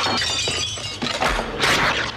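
Crash of breaking glass from a film trailer's sound effects, starting suddenly and ringing on with high shards. A second, louder crash comes near the end.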